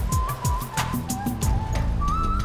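TV news segment jingle: electronic music with a quick ticking beat, a held high tone and repeated falling bass sweeps.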